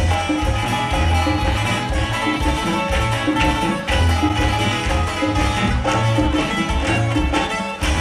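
Live regional Mexican band playing: a sousaphone bass line pulsing under strummed and plucked acoustic guitars, with congas and drums keeping a steady dance rhythm.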